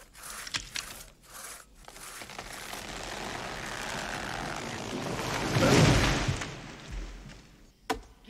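Two-man crosscut saw cutting through a tree trunk in quick strokes, then the tree cracking and coming down, building to a heavy crash about six seconds in. One sharp axe chop near the end.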